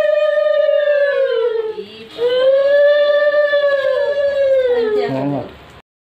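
A conch shell (shankha) blown in two long, steady blasts with a short breath between. The second blast falls in pitch and breaks up as the breath runs out, then the sound cuts off suddenly.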